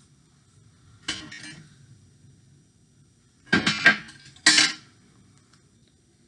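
Clear adhesive tape pulled off the roll in short screeching strips, three times: once about a second in and twice more a little past the halfway mark, the last one the loudest.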